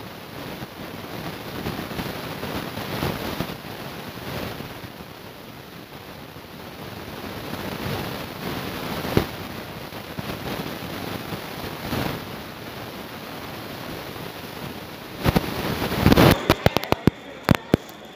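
Steady background hubbub of a busy shopping mall heard through a phone microphone, with an occasional click. Near the end a rapid string of sharp, loud cracks and knocks breaks in, the loudest sounds here.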